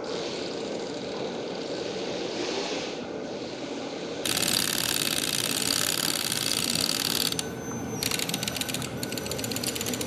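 Cordless drill running against the case of a clock radio. A louder run of about three seconds starts about four seconds in, and after a short pause comes a stretch of rapid clicking near the end.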